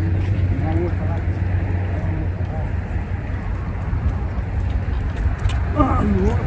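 Steady low rumble of road traffic, with faint voices in the first second and again near the end.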